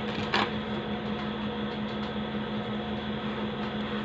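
Steady low electrical or fan hum with a faint hiss of room noise, and one brief tap or scrape about half a second in.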